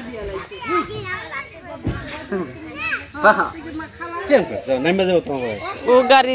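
Children and adults talking and calling out, with high-pitched children's voices.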